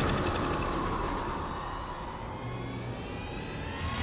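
Dramatic soundtrack sound effect. A loud rushing wash of noise, left over from a sudden crash-like hit, fades with a faint falling tone, and a new rushing swell begins near the end.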